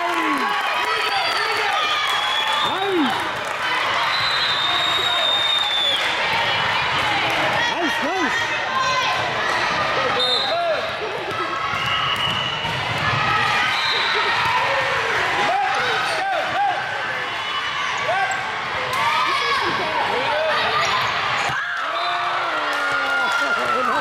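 Sneakers squeaking on a hardwood volleyball court, short squeaks over and over, with the occasional sharp smack of the ball being hit. Voices of players and onlookers run throughout in a large, reverberant gym.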